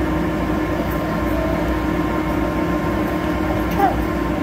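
Air blower of a floating-ball exhibit running steadily, a constant hum and rush of air.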